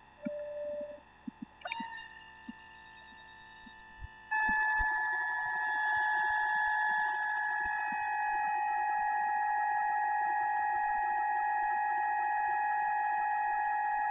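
Tektro bleed pump machine's electric pump running with a steady whine while it flushes old mineral oil out of a hydraulic disc brake system. It comes in faintly after a click about two seconds in, then grows louder about four seconds in and holds steady.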